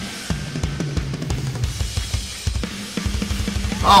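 Rock drum solo on a full drum kit, played live: rapid bass-drum strokes with snare hits and cymbals.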